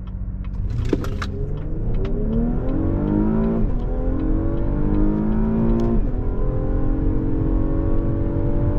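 Naturally aspirated 3.6-litre V6 of a 2016 Cadillac CT6 at full throttle from a foot-brake launch, heard from inside the cabin. The engine note climbs, drops at an upshift about three and a half seconds in, climbs again, and drops at a second upshift about six seconds in, with a slight pop on the shifts.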